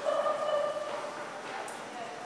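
A woman's voice holding one drawn-out high call for about a second, then quieter hall sound.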